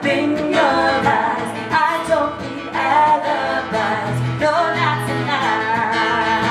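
Live pop-rock music: women's voices singing a melody over a backing band with guitar.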